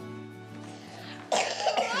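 Soft background music of sustained notes, then, about a second in, a woman gives a sudden cough and starts to speak.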